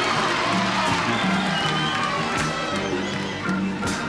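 Live soul band playing an instrumental stretch of a slow groove, with a steady bass line, and the audience cheering over it.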